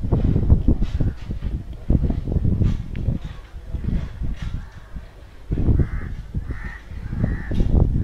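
A crow cawing three times in quick succession near the end, over uneven low rumbling noise.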